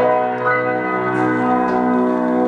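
A held piano chord ringing out, with a few higher notes played over it about half a second in.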